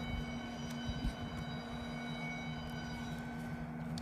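A steady low drone throughout, with a few faint scrapes and clicks of a utility knife blade trimming tape along the edge of a wooden sign board about a second in.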